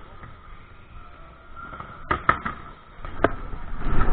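Steady background hum of a large indoor hall with a faint steady tone, then from about two seconds in a series of sharp knocks and bumps, growing louder near the end, as the camera is jostled and moved about.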